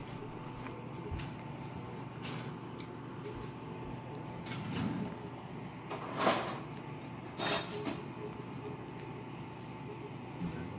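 Metal spatula cutting into baked casserole and scraping against the glass baking dish, a few short scrapes with the two loudest about six and seven and a half seconds in, over a steady faint hum.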